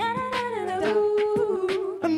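A cappella backing singers humming a held note, with a few sharp vocal-percussion hits over it.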